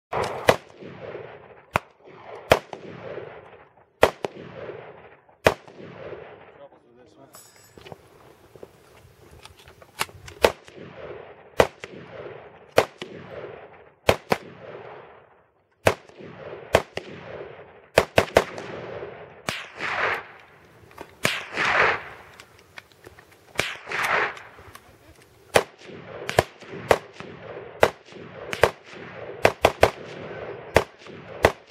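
AR-15 rifle firing a long string of single shots at an uneven pace, each crack trailed by a short echo. There is a pause of a few seconds about a third of the way in.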